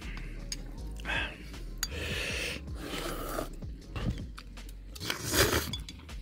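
A person eating instant ramen noodles: a noisy slurp about two seconds in and a louder one near the end, with chewing between.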